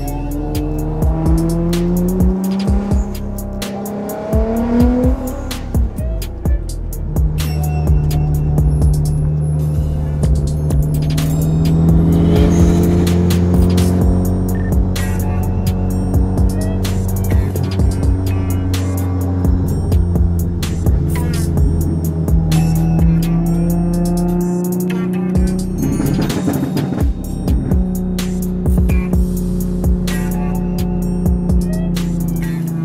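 Sports car engines accelerating, rising in pitch twice in the first few seconds and then running steadier, mixed under a music track with a steady beat.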